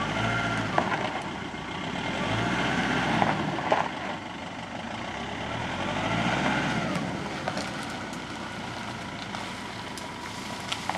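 Nissan Navara D22's 2.5-litre common-rail turbo-diesel engine pulling a felled tree on a drag chain, revving up and easing off three times as it takes the load. Two sharp knocks come in the first four seconds.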